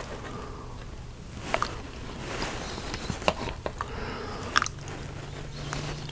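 Close-miked chewing and mouth sounds of a man eating, with a few sharp clicks scattered at irregular intervals.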